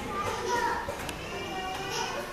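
Indistinct high-pitched voices chattering in the congregation, like children talking, while the speaker at the front is silent.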